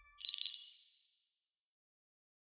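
A bright, high-pitched ding sound effect from an animated logo sting. It starts just after the opening, over the last of a fading lower tone, and rings away within about a second.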